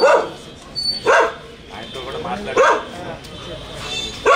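A dog barking: three short, single barks about a second or more apart, over faint background voices.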